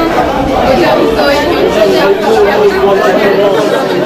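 Several people talking at once, overlapping chatter and greetings with no single voice standing out.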